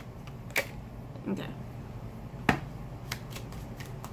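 Small Lenormand cards being handled and shuffled by hand, giving a few sharp clicks and snaps among fainter ticks; the loudest snap comes a little past halfway.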